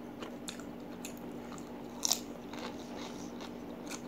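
Close-miked chewing of a crispy cracker: a run of crisp crunches, the loudest about two seconds in, under a faint steady hum.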